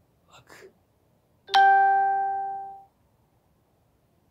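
A single chime, struck once about one and a half seconds in, ringing out as one clear tone and fading away over a little more than a second.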